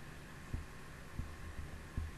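A few soft, low thumps on a close desk microphone, about four in two seconds, from a hand moving at the mic: handling noise. A faint steady hum and hiss lie beneath.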